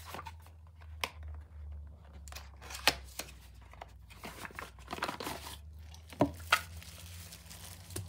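Packaging being handled and opened: a small cardboard box and the wrapper round a drone battery crinkling and tearing, with a few sharp clicks and taps scattered through it, over a steady low hum.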